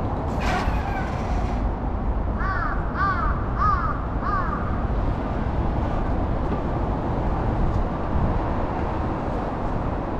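A crow calling four times in quick succession, short arched caws, over a steady rumble of city traffic, with a brief hiss near the start.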